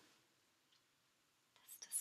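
Near silence: quiet room tone between spoken lines, with a couple of faint small clicks near the end.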